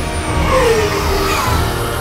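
Motorcycle engines running at speed under film score music. A pitch falls about half a second in, like a machine sweeping past.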